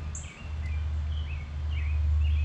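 Birds chirping in short, high calls over a steady low rumble.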